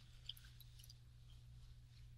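Near silence: a steady low room hum with a few faint small ticks.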